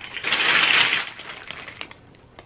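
A clear plastic bag of small sample jars with black lids crinkling and rattling as it is handled, loudest in the first second, then a few light clicks as the jars knock together.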